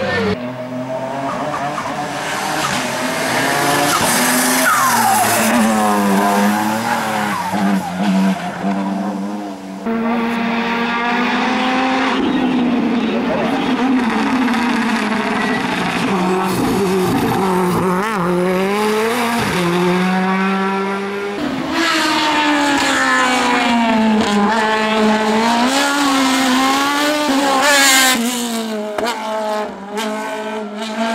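Hillclimb race cars running hard up the course, one after another. The engines rev up and drop back again and again through the gear changes.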